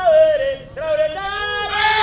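A voice singing long, held notes, with a short break about two-thirds of a second in.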